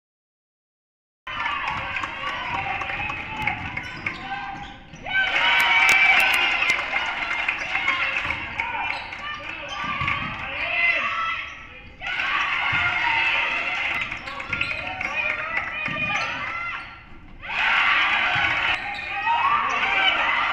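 Gym game audio from a girls' basketball game: a basketball dribbling on the hardwood court, with players' and spectators' voices. The sound starts about a second in and changes abruptly about five, twelve and seventeen seconds in, where the highlight clips are cut together.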